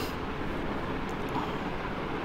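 Steady background hum and hiss of room noise, even and unbroken, with no distinct events.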